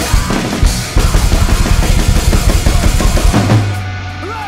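Acoustic drum kit with Zildjian cymbals played along to a recorded metalcore track, with a fast run of kick-drum strokes from about a second in. Near the end the drums stop and a held low note rings out in the music.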